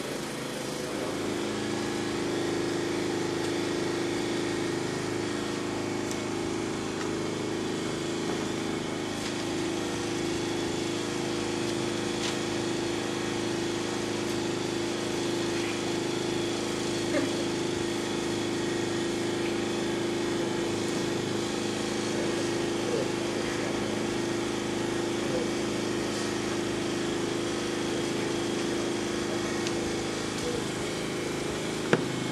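A steady low hum of a few held tones over a hiss, with one sharp tick a little past halfway.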